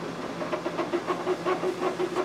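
A cloth rag rubbing and wiping Cosmoline grease off the cast metal of a mini milling machine, in quick repeated strokes about six a second.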